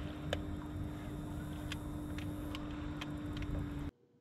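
A boat motor runs steadily with a constant hum and low rumble, with a few sharp clicks scattered through it. All of it cuts off suddenly just before the end.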